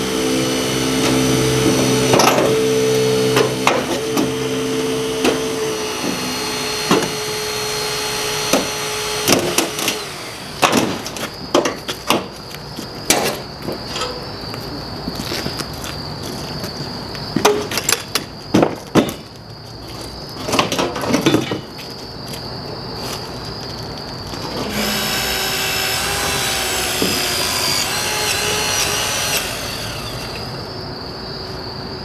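Battery-powered rescue tool motor running steadily, then a run of sharp cracks and snaps as a car's front fender is broken and torn away. Near the end the tool motor runs again, its pitch shifting as it works.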